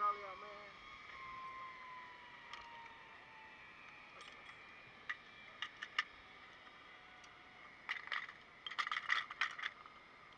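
Metal clicking and clinking of zip line trolley hardware on a steel cable being handled: a few single clicks about five seconds in, then a quick run of rattling clinks near the end.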